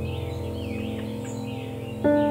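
Bird chirps and short gliding whistles over a held, slowly fading chord of ambient music.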